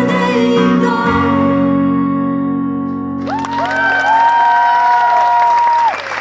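The close of a live song on electric and acoustic guitar: chords, then a chord left ringing, then a long sung final note held for a few seconds that stops abruptly just before the end.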